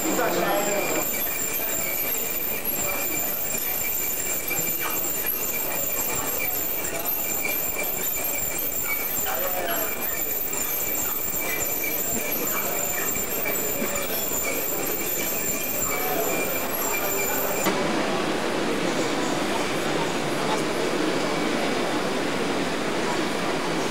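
Machinery running in a busy exhibition hall, a steady mechanical noise with a high whine, under the chatter of a crowd. The whine cuts off abruptly near the end, leaving a fuller hall noise.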